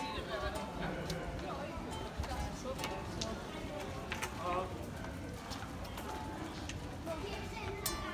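Street ambience on a paved pavement: scattered clicks like footsteps on stone, indistinct voices, and a steady low city rumble. Faint, short plucked notes come from a silent guitar, an unamplified instrument with no body that makes little sound of its own.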